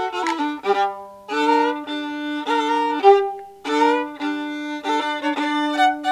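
Solo violin, bowed, playing a lively tune with many notes sounded two strings at a time. A low note is held underneath through the first half, with a brief break about three seconds in.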